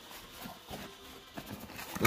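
Faint rustling and a few light taps of a thin cardboard mailer box being handled and pulled open by hand.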